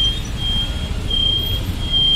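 Low rumble of a motorbike ride through city traffic: engine and road noise. A high electronic beep sounds in short pulses, several times.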